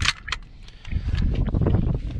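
Two sharp clicks about a third of a second apart as an HK SP5 pistol is handled, then from about a second in a low rumble of handling noise on the microphone.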